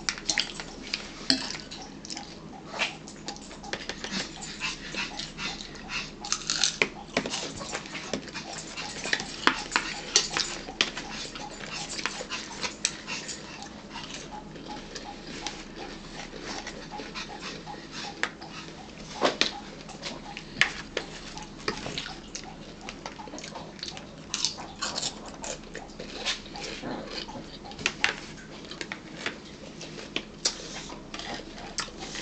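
Close-up eating sounds: crisp crunches and chewing of raw celery sticks spread with peanut butter, with scattered sharp clicks of a utensil being handled.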